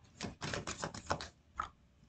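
Tarot cards being shuffled by hand: a quick run of about eight faint, sharp card clicks and snaps over a second and a half.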